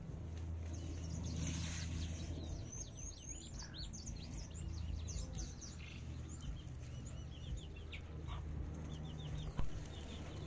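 Backyard birds calling, with short high chirps scattered all through, over a faint steady low hum.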